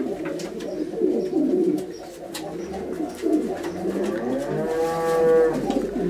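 Domestic pigeons cooing in a loft, many low coos overlapping, with a few light clicks. Near the end one longer drawn-out call rises and then holds.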